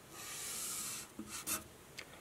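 Felt-tip marker drawing one long diagonal stroke, a steady scratchy hiss lasting about a second, followed by a few light clicks as the pen lifts and touches down.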